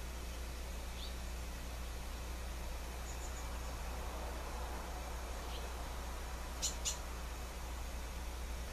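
Steady low electrical hum under background hiss, with a few faint, brief high chirps and two sharp clicks in quick succession about a second before the end.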